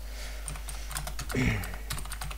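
Keystrokes on a computer keyboard, a scattering of separate clicks as a terminal command is typed, with a cough near the end.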